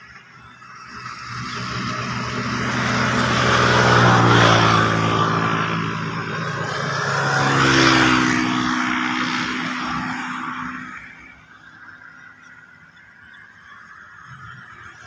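Motor vehicles driving past on a road: engine and tyre noise builds up, peaks twice, about four and eight seconds in, with the engine pitch dropping as each goes by, then fades away.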